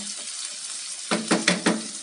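Frozen green beans and onion sizzling in hot oil in a frying pan, stirred with a wooden spatula; about a second in, a quick run of four knocks as the spatula strikes the pan.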